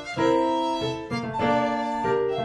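Early baroque chamber music: a violin melody over a keyboard basso continuo, with notes held about half a second each.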